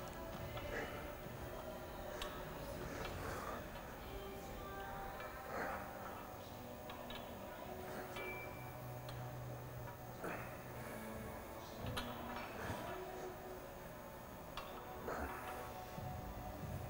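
Quiet gym room sound: faint background music with occasional light clicks.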